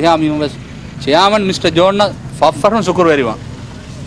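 A man speaking in two short phrases, then a pause near the end.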